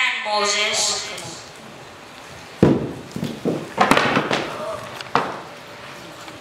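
A voice trails off, then come three sharp bangs about a second and a quarter apart, the first the loudest, with a few lighter knocks between them.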